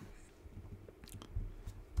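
A few faint, scattered clicks and soft taps, typical of a computer mouse and keyboard being worked.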